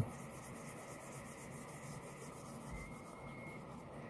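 Faint rubbing of a leather knife sheath being turned over and handled in the hands.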